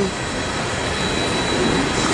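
Diesel freight locomotives running as they pull a train of empty coal hopper cars, a steady noise without breaks.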